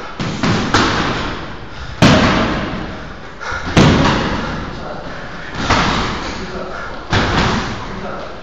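Kicks and punches smacking into Muay Thai pads: six sharp, irregularly spaced impacts, each ringing briefly in the room, the hardest two about two seconds in and nearly four seconds in.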